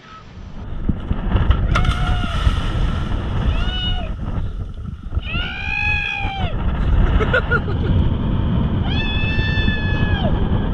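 Heavy buffeting noise of wind on the microphone on a boat at sea. Over it come four long, high calls, each rising and then falling in pitch, the longest about a second.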